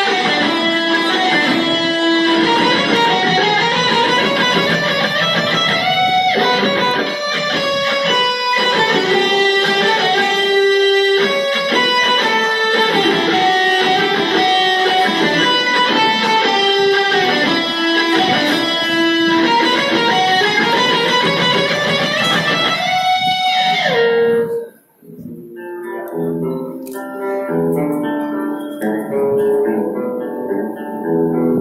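Electric guitars played through small amplifiers: a loud lead melody of quick, sustained notes over a rhythm part. About 24 seconds in the playing stops suddenly, and after a short pause a quieter, softer picked note pattern begins.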